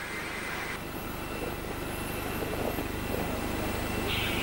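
Jet aircraft engine noise, a steady rush with a thin high whine, slowly growing louder.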